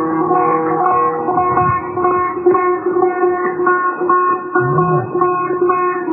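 Setar playing an instrumental passage in avaz Abu Ata: quick repeated plucked notes over strings left ringing underneath.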